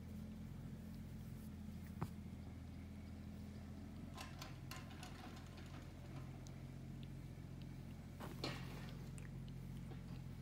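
Cat licking and grooming a kitten's fur: faint wet licks and rustles in short clusters, with a sharp click about two seconds in, over a steady low hum.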